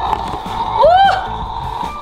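Electronic sound effect from a battery-powered toy monster-laboratory kit, set off by its fingerprint scanner: a steady hissing hum with one short swooping tone that rises and falls about a second in.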